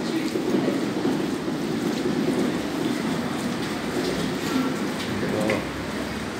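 Steady rumble of city traffic carried into a pedestrian underpass beneath a wide street, echoing off the concrete, with faint distant voices.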